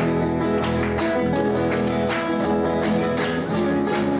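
An Argentine folk song played live on a nylon-string classical guitar, chords strummed in a steady rhythm.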